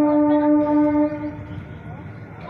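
Local electric train's horn sounding one long steady tone that cuts off a little over a second in, leaving the rumble of the train running through a station.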